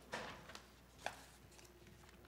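Faint handling noise at a meeting table: a short rustle near the start and a single sharp knock about a second in, over quiet room tone.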